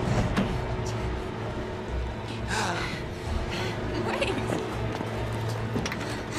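Film soundtrack: a dark music score over a steady low drone, with a few short breathy vocal sounds from a character about halfway through.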